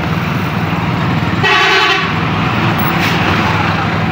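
Auto-rickshaw engine running steadily while driving. A vehicle horn toots once, for about half a second, about one and a half seconds in.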